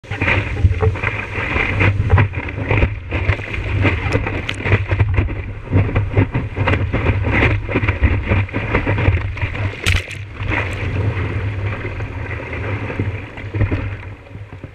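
Water rushing and splashing against a surfboard and its nose-mounted action camera as the board moves through whitewater, with wind buffeting the microphone. Loud, constant rumble crossed by many small splashes and knocks.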